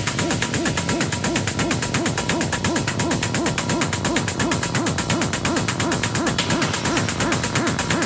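Techno in a breakdown without the kick drum: a short rising-and-falling synth note repeats quickly, hoot-like, over steady hi-hat ticks.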